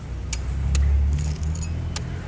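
A few sharp metallic clicks and taps of a knife blade working through a durian husk on a steel table, over a steady low rumble that swells midway.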